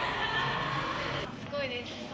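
Indistinct voices over steady room noise, with a short, high, sliding vocal sound about one and a half seconds in.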